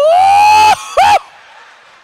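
A man's voice swoops up into one long, high-pitched held note, then gives a short rising-and-falling squeal about a second in: an exaggerated vocal sound of awe.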